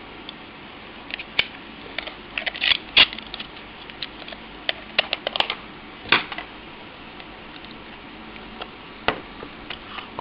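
Sharp plastic clicks and short rattles of a handheld meter's battery cover being handled and pressed back into place over the battery compartment, bunched in the first six seconds, with one more click near the end.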